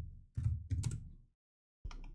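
Computer keyboard keystrokes: a short run of key clicks over the first second, then one more keystroke near the end.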